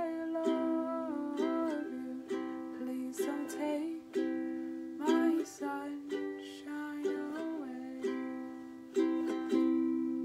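Ukulele strumming a slow lullaby with a chord about once a second, and a woman's voice singing the melody over it. Near the end a last strummed chord is left ringing.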